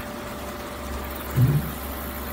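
A steady low background hum, like a machine or fan running, under a pause in a lecture, with one short low vocal sound about one and a half seconds in.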